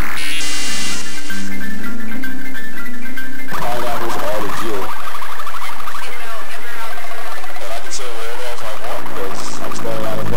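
Loud, heavily processed electronic music built from layers of digital dither noise run through plugin effects. About three and a half seconds in, the bass drops out and a warbling sound that bends up and down in pitch takes over.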